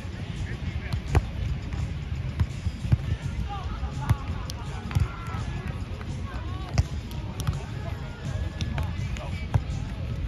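A ball being struck again and again in a beach game, sharp hits one to two seconds apart, over a steady low rumble, with faint distant voices.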